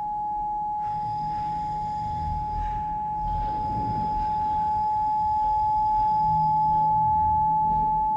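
A single steady pure tone, like a sine tone or singing bowl, held without a break and growing a little louder near the end, over a low rumble.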